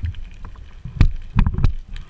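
Muffled underwater water noise heard through a camera housing, a low rumble with several sharp knocks: the loudest about halfway through, then a couple more shortly after, as the speargun and a freshly speared fish are handled.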